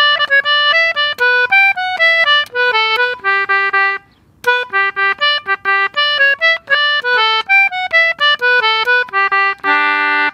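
Concertina playing a simple jig melody in G major, one note at a time in quick phrases with a short break about four seconds in. It is a newly composed tune's last four bars being tried out, the call-and-response phrase repeated with a changed ending.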